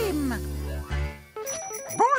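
Cartoon soundtrack music and effects: a sliding note over a held low chord, then a quick, high ringing jingle like a phone ringtone starting about one and a half seconds in.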